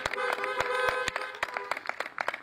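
Several car horns honking together as applause from a drive-in congregation, a few steady horn notes overlapping and held, with scattered sharp claps or taps.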